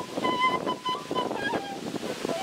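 Quena, the Andean notched end-blown flute, playing a slow melody of long held notes, with a brief step up and then down in pitch late on, over the steady rush of a waterfall.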